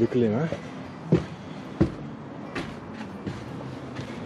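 Footsteps climbing wooden stairs: a knock of a shoe on a wooden tread about every 0.7 seconds, four in all.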